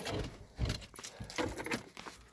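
A few faint, irregular knocks and light rustling from a phone being handled and moved about in a car's cabin.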